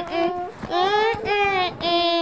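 A high voice singing a wordless tune in held notes, with a slide up and back down in pitch about a second in.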